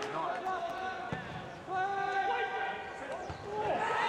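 Footballers shouting and calling to each other on the pitch, with the thud of a ball being kicked about a second in. The shouting swells near the end.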